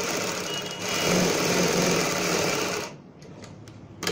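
Sewing machine running steadily as it stitches layered cloth, getting louder about a second in and stopping about three seconds in.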